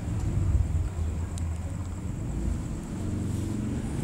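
A pause between speech holding a low, steady rumble of background noise, with a faint steady high tone and a single faint tick.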